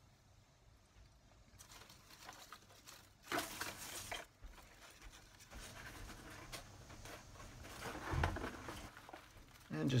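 Hands digging into damp potting soil and pulling strawberry plants and their roots apart: soil and dry leaves rustling and crackling in irregular bursts, loudest about three seconds in, with a dull bump near the end.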